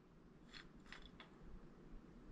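Near silence: room tone with three faint, short clicks in the first half, from a brass tube and its small wooden base being handled on a wooden workbench.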